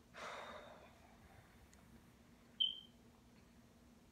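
A woman's sigh, a soft breath fading over about half a second, then a single short, sharp click about two and a half seconds in.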